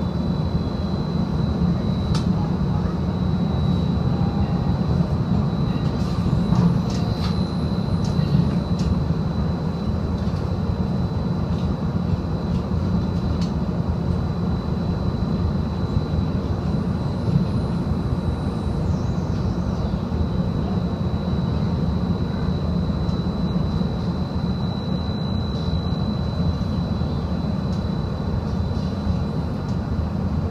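Seattle streetcar running between stops, heard from inside the car: a steady low rumble of wheels on rail with a constant thin high whine and an occasional sharp click.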